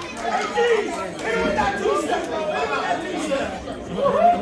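Wrestling crowd at ringside chattering and calling out, many indistinct voices overlapping.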